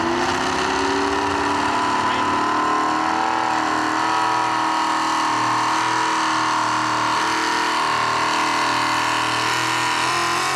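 Supercharged pulling truck's engine revving up in the first second, then held steady at high rpm as the truck pulls the weight-transfer sled down the dirt track.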